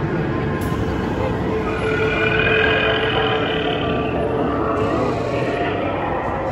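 Busy exhibition-hall din: music playing over the voices of a milling crowd.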